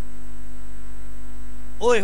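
Loud, steady electrical mains hum in the microphone and sound-system chain, holding at full strength through a pause in the speech.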